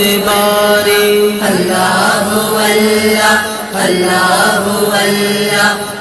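A male voice singing a hamd, an Urdu devotional song praising God, in long drawn-out melismatic notes over a steady low drone.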